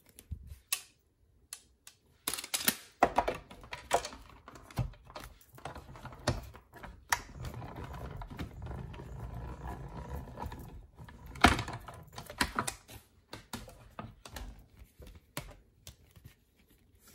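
Hand-cranked Stampin' Cut & Emboss machine in use: plastic plates and an embossing folder clicking and knocking as they are handled and fed in, with a low rumble in the middle as the plate sandwich is cranked through the rollers and a louder knock a little after.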